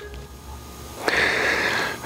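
A man's long, breathy exhale through the mouth, starting about a second in, a sigh after fumbling his line.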